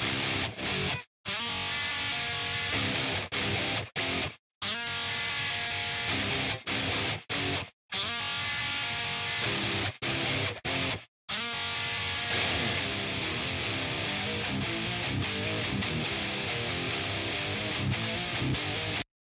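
Soloed high-gain electric rhythm guitar played through a Neural Amp Modeler capture of an EVH 5150 III on its blue channel with a TS9 Tube Screamer. It plays a distorted metal riff of tight, chugging palm-muted notes, and it cuts to dead silence several times where the noise gate closes between phrases.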